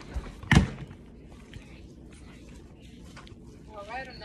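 Handling of a plastic glue bottle at a tabletop: one sharp knock about half a second in, then faint rustles and small taps.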